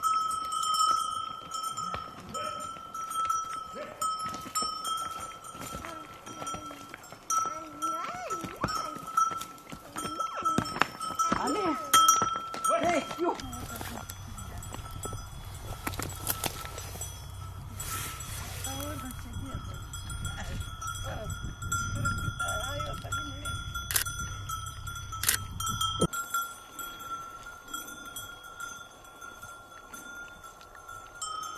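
Livestock bells on a moving caravan of pack camels ringing steadily, with scattered animal calls and clatter. A low rumble runs through the middle of the stretch and stops suddenly.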